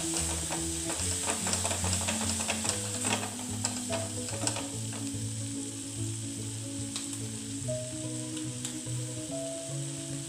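Chopped vegetables sizzling in a frying pan with a splash of soy sauce and water while a wooden spatula stirs them. Sharp clicks and scrapes of the spatula against the pan come often in the first half, then thin out.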